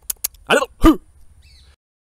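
A man makes two short non-word vocal sounds, like throat clearing, close to a hand-held clip-on microphone, the second louder with a falling pitch. A couple of sharp clicks from fingers handling the microphone come just before, and the audio cuts off abruptly near the end.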